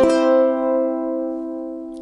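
Solid-mahogany Mahimahi MT-87G tenor ukulele with Aquila Nylgut strings: one chord strummed and left to ring, fading slowly and evenly over two seconds.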